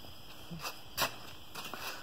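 Quiet room tone with a few light clicks and knocks, the sharpest about a second in.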